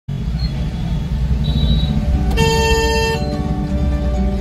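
Busy street traffic with motorbike engines rumbling, and a vehicle horn honking once for under a second about halfway through. Fainter high-pitched horns sound briefly before it.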